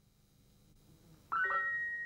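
A synthesized note from a Soundbeam, set off by a foot moving through its ultrasonic beam. It starts suddenly just over a second in as a bright tone of several pitches, and the highest pitch rings on as the lower ones fade.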